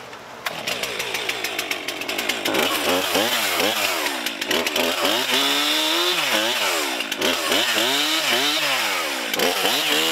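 Two-stroke chainsaw cutting into a fallen tree limb. It comes in suddenly about half a second in, then its engine pitch rises and falls over and over as it is revved through the cut.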